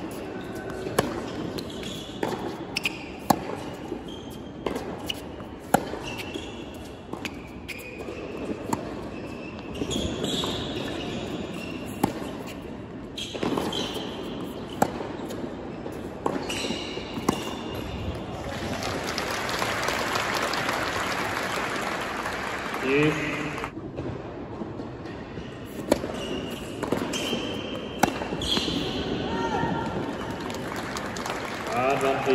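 Tennis rally on an indoor hard court: racket strikes on the ball and bounces, about one a second. Then applause for about five seconds after the point, and a few more sharp ball bounces near the end.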